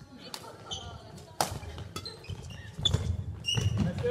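A badminton rally: several sharp cracks of rackets striking the shuttlecock, the loudest about a second and a half in, with shoe squeaks and footfalls on the wooden court floor.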